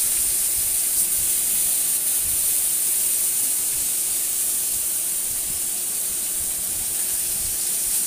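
Pieces of koi fish (climbing perch) sizzling steadily as they fry in hot oil in an aluminium karai.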